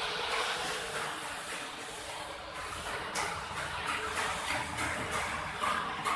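Steady rushing noise of machinery running, with a few faint knocks.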